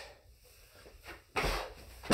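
A single dull thump about one and a half seconds in: feet landing on a carpeted floor as they are jumped back into a plank during a squat thrust.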